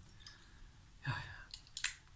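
A soft, breathy exhale with a murmured "yeah" as a freshly sprayed perfume is smelled, then one sharp click near the end.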